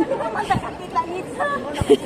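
Several people's voices chattering indistinctly, with two brief low knocks, about half a second in and near the end.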